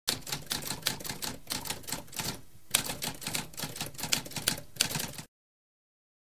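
Typewriter typing: rapid, irregular key strikes with a short break about halfway, stopping abruptly a little after five seconds.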